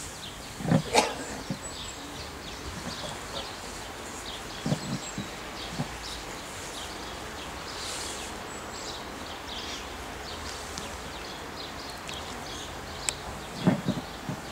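Birds chirping in short scattered calls over the steady hush of a large outdoor crowd, with a few brief low sounds about a second in, around the middle and near the end.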